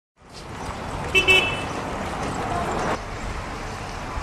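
Outdoor street ambience with a steady background of traffic, and a quick double toot of a vehicle horn about a second in.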